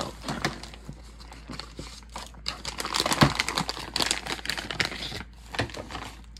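Clear plastic bag crinkling and rustling as padlocks are pulled out of it. Short bursts at first, then a busier stretch of crinkling through the middle.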